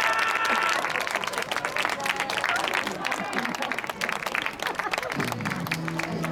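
Ballpark crowd clapping and cheering for a walk-off home run, a dense patter of hand claps with voices mixed in. About five seconds in, stadium music starts up.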